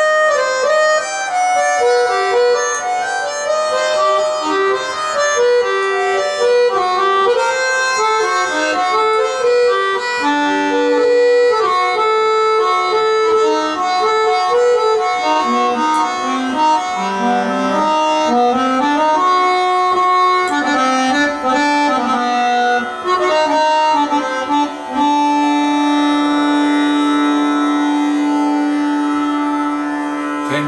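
Harmonium playing a slow, unaccompanied aalap in raga Ahir Bhairav: a single melodic line moving step by step through sustained reedy notes and dipping to its lowest around the middle. It then settles on one long held note for the last few seconds.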